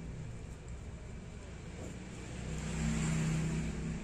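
A steady low mechanical hum with a hiss, swelling louder about two and a half seconds in.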